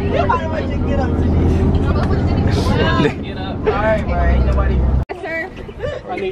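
Several young people's voices talking and calling out at once inside a moving bus, over the steady low drone of its engine and road noise. The sound cuts off abruptly about five seconds in, and different voices follow without the drone.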